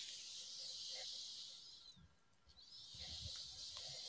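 Two long, faint hissing breaths on a computer microphone, one right after speech stops and a second from just before the middle, with a brief quiet gap between them.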